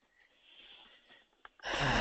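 A faint breath into a call microphone, then a man starts speaking near the end.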